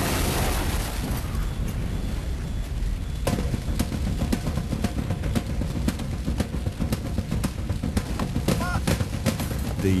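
A homemade bomb explodes right at the start, a blast whose noise dies away over the next few seconds. From about three seconds in a fire burns on, with many sharp cracks and pops over a low rumble.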